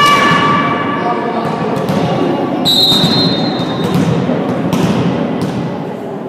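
Volleyball match in an echoing gym: spectators' chant dies away in the first second over general crowd noise, then a referee's whistle blows one steady blast of about a second near the middle. A few sharp thuds of the ball being hit follow in the second half.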